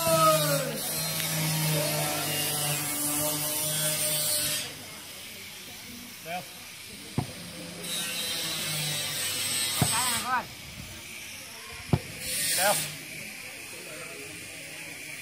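Outdoor volleyball rally: a few sharp slaps of hands striking the ball and short shouts from the players, over a steady buzz that cuts out for a few seconds partway through.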